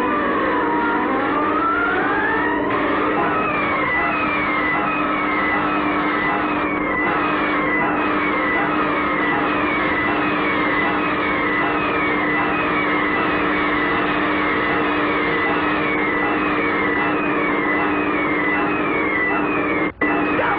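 Electronic science-fiction soundtrack: a steady, siren-like electronic drone of several held tones. A whine rises over the first two seconds, then short falling chirps repeat about one and a half times a second.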